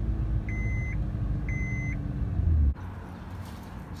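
Honda Pilot V6 idling with a loud exhaust leak from a split exhaust flex pipe, heard from inside the cabin. A high dashboard warning chime beeps twice over it, a second apart. The engine sound stops abruptly about two and a half seconds in, leaving quieter background.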